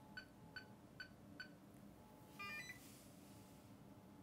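Polymaker Polysher smoothing machine beeping faintly as it is started: four short, evenly spaced beeps about two-fifths of a second apart, then a quick chirp of stepped tones about halfway through.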